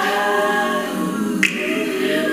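Recorded song of layered a cappella voices singing in close harmony, with one sharp snap about one and a half seconds in.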